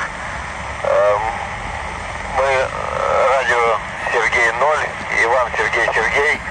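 Voice transmission coming through the speaker of a Yaesu handheld radio receiving the ISS radio contact: several short stretches of thin, narrow-band speech over steady radio hiss.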